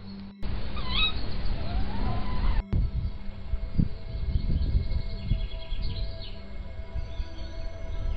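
Wild birds chirping and singing, clearest in the first couple of seconds and fainter afterwards, over a low rumbling noise from wind on the microphone. The sound drops out abruptly for a moment twice as one clip cuts to the next.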